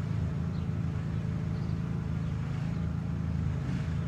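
An engine idling steadily: a low, even rumble with no change in speed.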